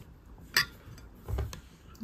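Metal spoon clinking against a ceramic bowl: one sharp clink about half a second in, then a duller knock about a second later.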